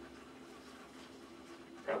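Faint, low-level stirring in a pot as instant mashed potato flakes are poured slowly into hot milk; a spoken word begins near the end.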